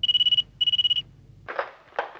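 Desk telephone ringing: two short rings of a high, fluttering tone in quick succession.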